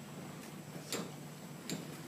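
Footsteps on a hard floor: three sharp taps, about half a second to three quarters of a second apart, over faint room noise.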